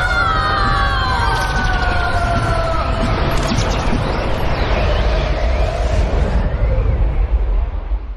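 Magical-vortex sound effect: several pitched tones sliding slowly downward over a heavy low rumble and a swirling wash of noise, the high end thinning out near the end.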